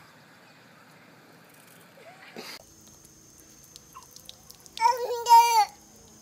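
A faint steady hiss, a brief click about halfway, then a toddler's high-pitched voice: one drawn-out call of about a second near the end, the loudest sound.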